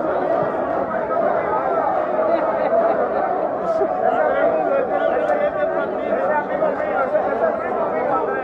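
Many voices talking over one another at a steady level: the chatter of a crowd of deputies in a large legislative chamber, with no single voice standing out.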